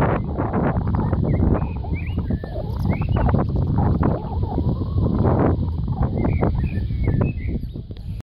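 Gusty wind rumbling on the microphone, rising and falling in loudness, with small birds chirping in short rising and falling notes.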